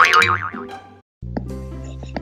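A cartoon wobbling 'boing' sound effect ends an intro jingle and fades out within a second. After a brief silence, light background music starts over a steady low hum, with soft plucked notes.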